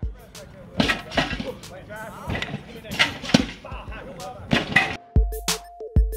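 A hip-hop beat drops out for about five seconds, leaving outdoor practice-field sound: a string of sharp thumps and knocks with indistinct voices. The beat, with its deep bass, comes back near the end.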